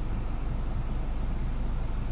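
Steady cabin noise of a 2012 Honda Accord Euro S standing with its engine running and the air conditioning blowing: a low hum under an even rush of air.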